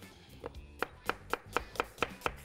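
Cleaver slicing a red onion on a wooden cutting board: a quick, even run of chops, about five or six a second, starting about half a second in. Soft background music plays underneath.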